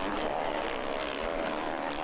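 Motocross bike engines at racing speed, a steady, even engine drone.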